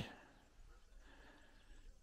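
Near silence: only faint outdoor background.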